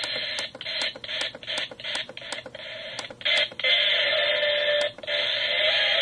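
A toy alarm clock radio's small speaker giving out FM static while it is tuned through the stations, cut by short clicks about three a second as the tuning steps. Between about three and five seconds in, a garbled station briefly comes through the static.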